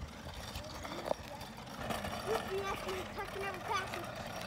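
A child's voice, faint and high, making short broken sounds in the second half, over quiet outdoor background noise. A single sharp click comes about a second in.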